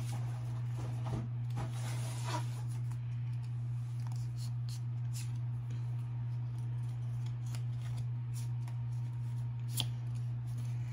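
Pokémon trading cards being flipped and slid against one another in the hands, with short papery clicks and rustles scattered through. A steady low hum runs underneath.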